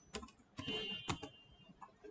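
Computer keyboard keys being typed: a few separate keystrokes, with a short denser clatter in the middle, as a search is typed and entered.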